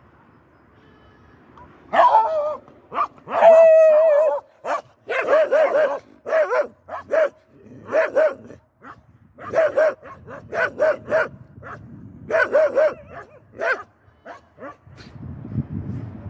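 A dog barking over and over, starting about two seconds in. One drawn-out bark comes early, followed by a run of short barks at one or two a second, which stop a little before the end.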